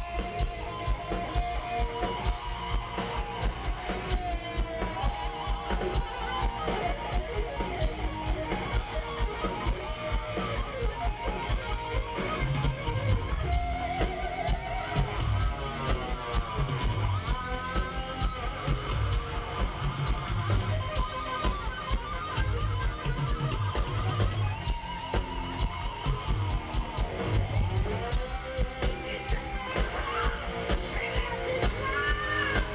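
Heavy metal band playing live, with a lead electric guitar solo of bends and sliding runs over a steady drum beat and bass guitar.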